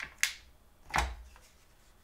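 Acrylic stamp block with a photopolymer clear stamp tapped onto an ink pad to ink it: a few short taps, the fullest about a second in.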